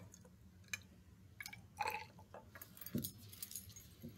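Faint glass clicks and clinks of a brown glass reagent bottle against a graduated cylinder as silver nitrate solution is poured in and the bottle is tipped back upright. The taps are scattered and thickest about three seconds in.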